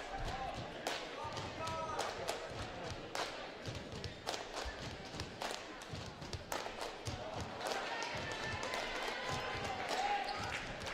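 Gym crowd chatter with a basketball bouncing on a hardwood court and scattered sharp knocks around a free throw.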